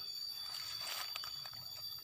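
Quiet outdoor background: a faint hiss with a steady high-pitched tone, and a few faint rustles about a second in.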